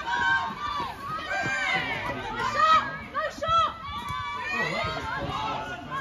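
Several high-pitched voices calling and shouting in short bursts across a football pitch during play, over low spectator chatter.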